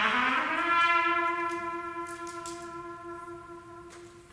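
A lone trumpet slides up into one long held note, which slowly fades away over the few seconds.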